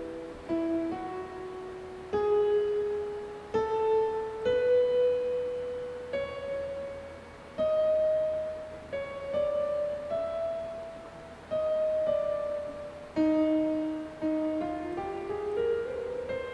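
Digital keyboard playing a piano sound: a slow run of single notes and chord tones, one struck every one to two seconds, each ringing and fading, the pitches stepping upward twice. The player is trying out different voicings of an E minor 9 chord.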